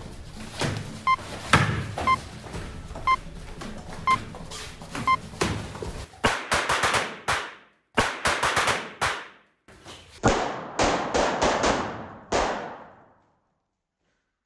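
Padded boxing gloves smacking focus mitts, with five short electronic beeps a second apart. About six seconds in, a loud bang from a small explosive charge that scatters confetti. The same bang then repeats several more times, each one ringing down and cut off abruptly, as in edited replays.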